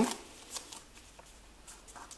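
A folded sheet of white origami paper being turned over and handled: faint rustling with a few short, crisp crackles of the paper.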